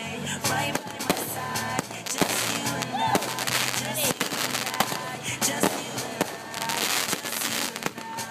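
An aerial fireworks display: shells bursting in a rapid run of bangs and crackles throughout, with music and voices underneath.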